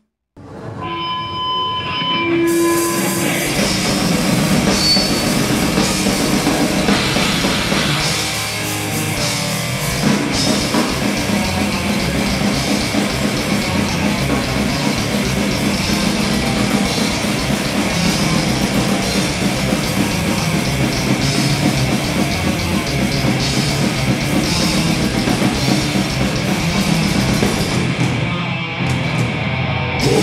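Death metal band playing live: distorted electric guitar, bass guitar and drum kit. After a few held notes, the full band comes in about two and a half seconds in and plays loud and dense from there on.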